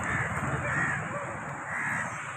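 A crow cawing, three caws in two seconds, over a low background rumble.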